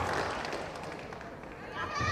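High-pitched shouting voices echoing in a large hall: one shout dies away at the start and another begins near the end, with a dull thud on the mat just before it.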